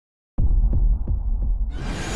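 Intro sound effects: a deep bass hum with heartbeat-like pulses about three times a second, starting a moment in. Near the end a brighter hiss swells up.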